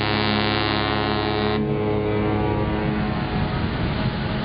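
Cruise ship's horn sounding a long, steady, deep blast that cuts off about one and a half seconds in. Its low note hangs on for a second more before dying away into a rumbling background.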